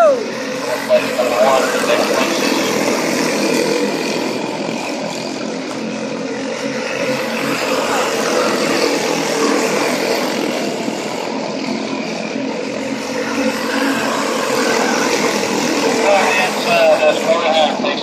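Several quarter midget race cars' small single-cylinder Honda engines running together as the pack laps the oval. Voices come and go over them about a second in and near the end.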